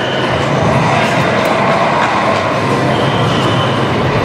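Steady, loud din of a busy darts hall: the noise of many electronic soft-tip dart machines and the people around them, with a few faint electronic tones.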